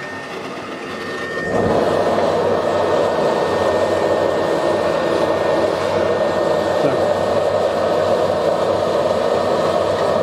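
A homemade propane forge with a blower-fed burner: the blower runs alone at first, then about a second and a half in the propane lights and the flame burns steadily with the blower, clearly louder than before.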